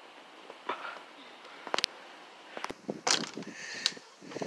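Brief bits of a person's voice among scattered sharp clicks and short rustling noises.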